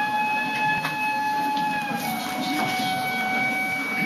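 Gagaku wind instrument holding one long, steady note that steps slightly lower about halfway through, with a few sharp clicks scattered through it.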